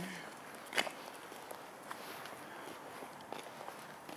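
Footsteps on a concrete pavement from a person and small dogs walking: light, scattered taps, with one sharper tap about a second in.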